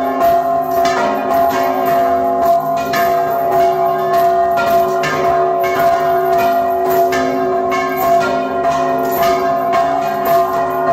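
Several church bells rung by hand, close up in the bell tower, their clappers pulled by ropes in a fast, continuous peal. Strokes come several times a second over a steady ringing.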